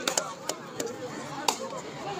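About four sharp slaps of hands on skin from kabaddi players during a raid, spread over two seconds, the loudest one late on, over voices.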